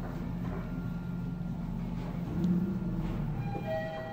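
Mitsubishi GPS-III traction elevator car travelling down with a steady low hum and rumble, swelling louder about two and a half seconds in. Near the end a clear electronic chime starts ringing.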